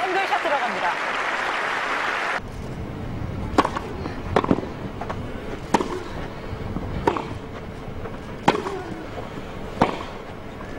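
Tennis crowd applauding on a grass court for about two seconds, cut off abruptly. Then a rally: a racket strikes the ball about every second and a half, some hits followed by a short vocal sound from a player.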